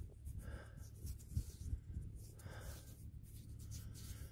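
Faint scratching and rustling of soil as a small buried target is dug out of a shallow hole by hand, in a few soft, irregular scrapes.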